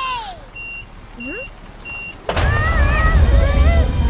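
Cartoon sound effects: a voice slides down in pitch, then a few short, evenly spaced high beeps. About two-thirds of the way in comes a sudden thud, then a loud low rumble with high children's cries over it.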